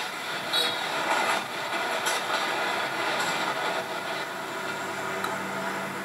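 The Reunification Express passenger train rumbling along the line: a steady rolling rattle with a few faint sharp clicks.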